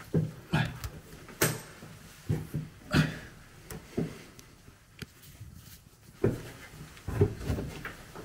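Someone climbing a vertical ladder: irregular knocks and thumps of feet and hands on the rungs, with a quieter pause a little past the middle before the steps pick up again.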